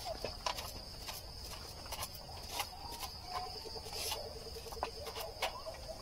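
Steady high-pitched insect chirring, with faint scattered taps and knocks.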